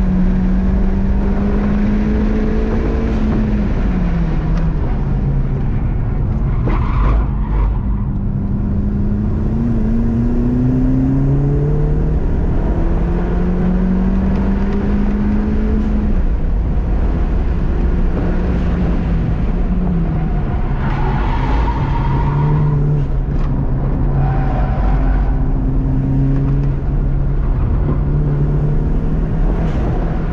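In-cabin sound of a 2020 Honda Civic Si's turbocharged 1.5-litre four-cylinder, fitted with a 27Won W2 turbo, driven hard on a race track. The engine note climbs through the revs and drops sharply at the upshifts, twice, over steady road and tyre noise.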